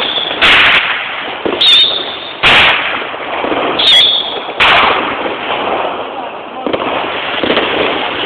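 Fireworks and firecrackers going off: five loud bangs in the first five seconds over a constant crackle of more distant explosions. Two of the bangs are followed by a short high whine.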